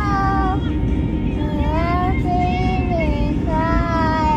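A young girl singing a slow melody in long held notes that glide up and down, over the steady low drone of an airliner cabin.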